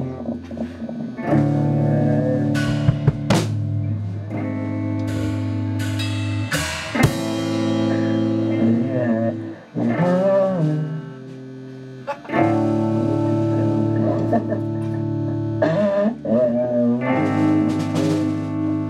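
A rock band rehearsing: electric guitar and bass guitar play held, ringing chords with a voice over them and a few sharp hits. The playing drops away briefly about two-thirds of the way through, then comes back in.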